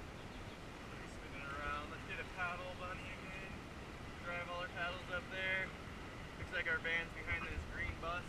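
Indistinct voices of people talking in the raft over the steady rush of fast river water.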